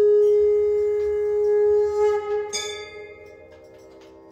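Harmonium holding one steady reedy note with a full set of overtones, which changes briefly about two and a half seconds in and then dies away to a faint tail.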